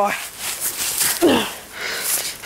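Dry leaf litter rustling and crackling, with rough handling noise, as someone gets up off the forest floor, and a short falling voice sound about halfway through.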